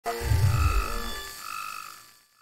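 Synthesized logo intro sting: a deep low swell with layered tones at the start, then two brief ringing tones about a second apart as it fades away.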